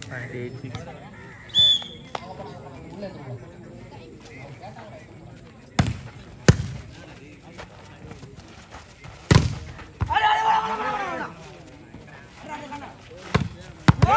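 Volleyball rally: the ball is struck by hand four times, sharp slaps a second or more apart, with players shouting between the hits.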